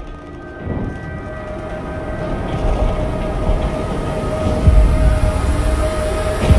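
Low rumble of a moving train, swelling steadily in loudness with heavy low thuds near the end, under a held tone from the score.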